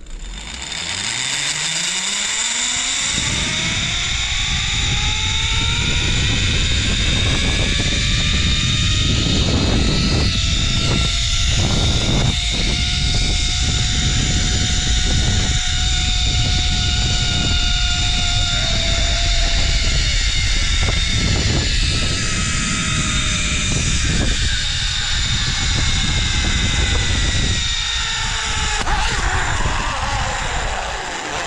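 Zip-line trolley pulleys running along the steel cable: a whirring whine that climbs in pitch over the first few seconds as the rider gathers speed, holds steady through the ride, and drops near the end as the trolley slows. Heavy wind rush on the microphone runs underneath.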